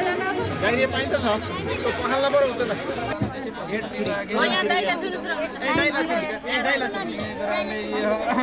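Several people talking at once, their voices overlapping in a steady chatter.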